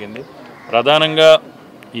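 A man's voice at close microphones: a short pause, then about a second in a loud, drawn-out vowel held on one steady pitch, like a hesitation sound between phrases.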